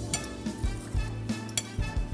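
Soft background music with a few light clicks of cutlery against a plate.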